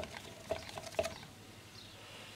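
A hand slapping the plastic blades of a car radiator fan to spin it up, three quick strikes about half a second apart, each with a short faint hum from the spinning fan, which then whirs on faintly.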